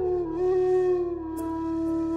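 Flute playing a slow phrase in Raag Bhoopali. One note slides downward in the first half-second and is then held long, with small steps in pitch, over a low steady drone.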